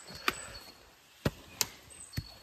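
Three sharp knocks: one shortly after the start, then two close together in the second half.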